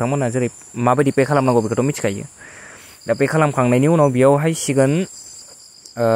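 A man's voice speaking in three short stretches with brief pauses between them.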